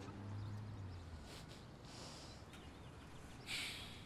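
Quiet ambience with a low hum for about the first second, then a short breathy puff from a person near the end.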